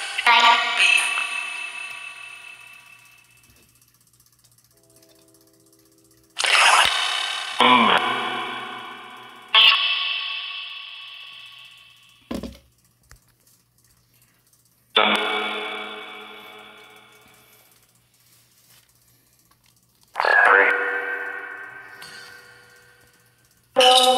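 Necrophonic ghost-box app playing short snippets from its DR60 sound bank through echo and reverb. Sudden pitched bursts come every few seconds, each ringing away over one to three seconds, with one short knock about twelve seconds in.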